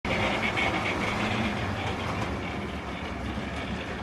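Model railway locomotive running along the layout's track: a steady whir of its small electric motor and wheels on the rails, with a thin high whine.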